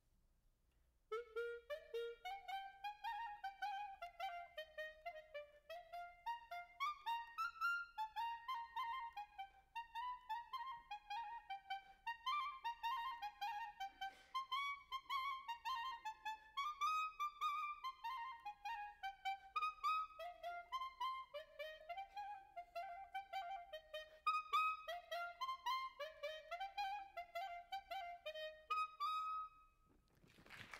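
Solo piccolo (E-flat) clarinet playing a quick melody of many short notes in its high register: the instrument's mocking take on a sweet theme. It starts about a second in and stops just before the end.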